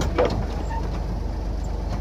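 Toyota FJ40 Land Cruiser's straight-six engine running steadily on an off-road trail, a low even drone heard from inside the open cabin.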